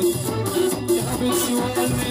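Live band playing an instrumental passage with a steady beat: drum kit, electric guitar and keyboard.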